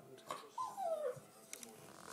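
A terrier whining: one high whine that slides down in pitch, about half a second long, a little after half a second in.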